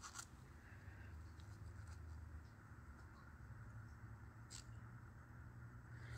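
Near silence: faint soft scraping and a few light taps of a wooden craft stick moving through thick acrylic pour paint in a plastic cup, over a low room hum.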